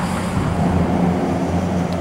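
Road traffic crossing a bridge: a steady low rumble.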